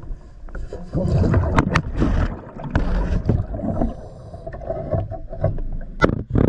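Underwater sound of a diver's breathing regulator: irregular bubbling rumbles that swell and fade, with a few sharp clicks and knocks.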